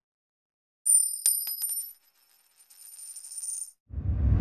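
A high, bright metallic chime sound effect begins about a second in, with a few quick clicks and ringing high tones. It is loudest for about a second, then comes back as a quieter shimmering ring near the end.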